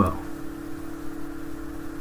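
A steady low hum, one held tone with fainter tones above and below it, over quiet background noise. A spoken word ends at the very start.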